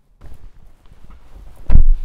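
Clothing rustling against a clip-on mic as a person moves into a car seat, then one heavy low thump near the end as he settles in.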